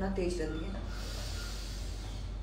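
A woman draws in a slow, deep breath through her nose as part of a calming breathing exercise. It is a soft hiss lasting about a second, just after her last word.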